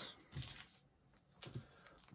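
Faint rustling of wrapped chocolate bars' plastic wrappers being handled on a tabletop, in a short burst about half a second in and a few small rustles near the end.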